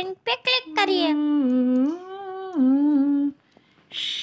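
A voice humming a short tune of a few held notes that step down, up and down again, after a couple of quick syllables. It stops about half a second before the end.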